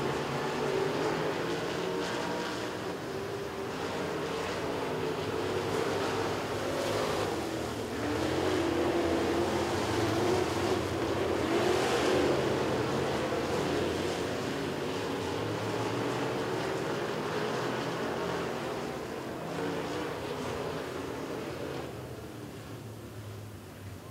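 Several dirt-track Modified Street race cars' engines running at racing speed as the pack goes around. They swell loudest about ten to twelve seconds in and fade toward the end.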